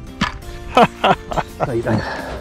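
A person laughing several short times over background music.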